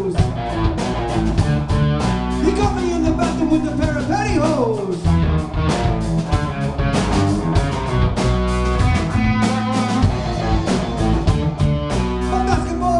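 Live rock band playing: electric guitar, bass and a Sonor drum kit, with the drums keeping a steady beat and the guitar bending notes about four seconds in.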